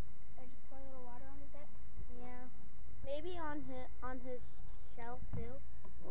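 A high-pitched voice talking in short phrases, words unclear, over a steady low hum.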